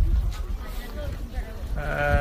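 A sika deer bleating once near the end: a short, steady, pitched call over faint background voices.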